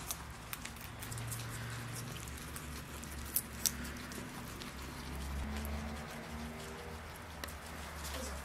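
Guinea pigs crunching raw carrot: a run of quick crisp clicks, two louder ones about three and a half seconds in, over a low steady hum.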